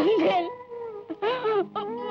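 A woman crying in wavering, broken sobs, three bursts of wailing over a steady held musical note.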